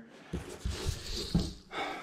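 A person breathing softly close to the microphone, with a few soft handling bumps.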